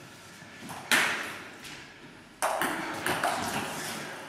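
Table tennis ball being hit: a sharp click about a second in, then a quick run of clicks from about two and a half seconds on, as in a rally.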